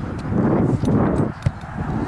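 Wind buffeting the microphone in irregular low gusts, with one sharp thump about one and a half seconds in.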